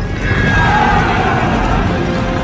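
A horse whinnies once, a long call falling slightly in pitch, over dramatic film music.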